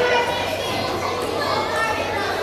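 Many children's voices chattering and calling at once in a large hall, a steady overlapping hubbub.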